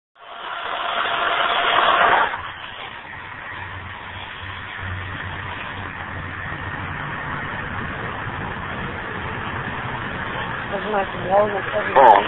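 Ghost box, a hacked Radio Shack radio sweeping the FM band, hissing with static. The hiss is loudest for the first two seconds, then settles to a steadier hiss with a faint low hum, and a voice comes in near the end.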